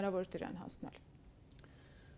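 A woman's voice ends a sentence, followed by a few faint clicks and then about a second of near silence.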